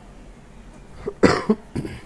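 A man coughing: a short burst of coughs about a second in, the first cough the loudest.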